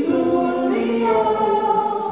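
Group of voices singing a yodel together, in held notes that step between lower and higher pitches.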